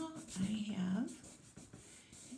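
Fingertip rubbing soft chalk into black construction paper to blend the colours: a quiet, dry, scratchy rub. A voice speaks briefly about half a second in.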